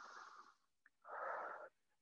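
A woman breathing audibly but faintly: one breath trails off in the first half second, and a second, slightly louder breath comes about a second in.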